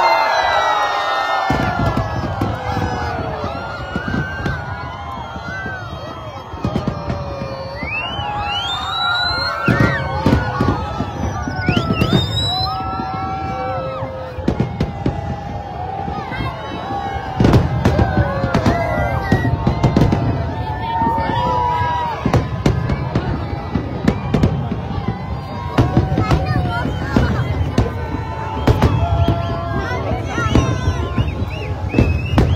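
A large aerial fireworks display: repeated sharp bangs over a dense low rumble of overlapping bursts, which build from about a second and a half in. A big crowd's voices and shouts run throughout, with a few high rising whistles near the middle.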